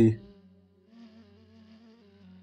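The last of a man's spoken word right at the start, then a faint, steady hum of held low tones with fainter higher overtones.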